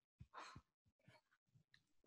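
Near silence, with one faint breath out from a woman about half a second in.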